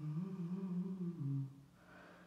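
A voice humming a short, low melody of a few notes that rises and then falls, stopping about a second and a half in.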